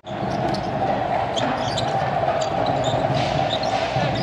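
Basketball arena crowd noise, a steady murmur, under live game play, with a ball being dribbled on the hardwood court.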